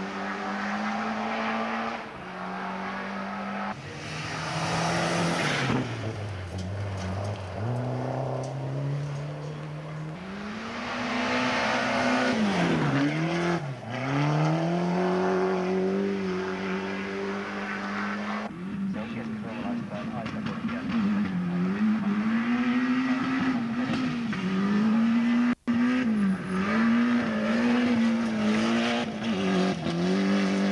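Ford Sierra Cosworth rally cars' turbocharged four-cylinder engines running hard through a stage, the note held high, then falling steeply and climbing back as the drivers lift off and accelerate again, twice in the first half. In the second half the revs rise and fall in quick succession. Spectators' voices can be heard under the engines.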